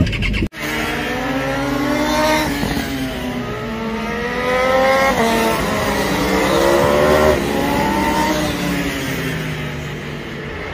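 Track-day sports motorcycles accelerating on the circuit. The engine note rises steadily and drops sharply at each upshift, about three times, then climbs again near the end.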